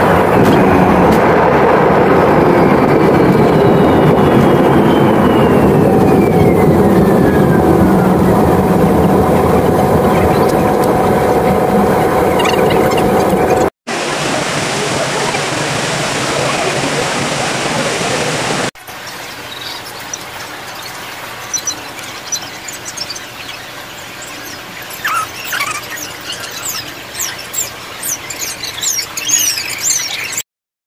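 Jet airliner engines heard from inside the cabin on the ground: a steady, loud rumble with a high whine falling slowly in pitch. About 14 s in, the sound cuts to a steady rushing hiss, and then to quieter indoor ambience with scattered clicks.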